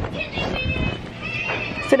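A small curly-haired dog scrambling over bedding right against the microphone: fur brushing and rustling with short knocks, mostly in the first second.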